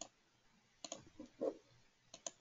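A few faint clicks on an otherwise quiet audio line: one at the start, a couple more just under a second in, and a short soft knock around a second and a half.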